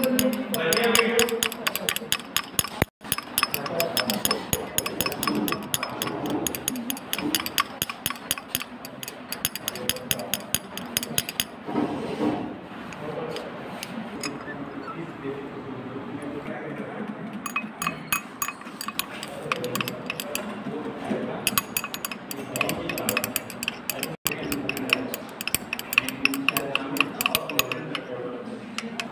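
Rapid, steady clinking of glass on a glass beaker as iodine and potassium iodide are stirred into a water–ethanol mixture to dissolve them. It comes in two long runs with a quieter pause of several seconds in the middle.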